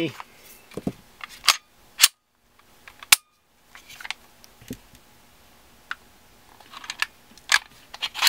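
Sharp, separate clicks and snaps of a CZ P10C polymer-frame pistol being handled for takedown as its magazine and slide are worked. The loudest click comes about three seconds in.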